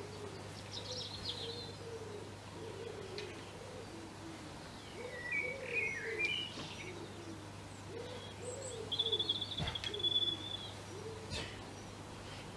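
Pigeons cooing over and over in a low, rolling rhythm, with small songbirds chirping above them and a brief high trill about nine seconds in.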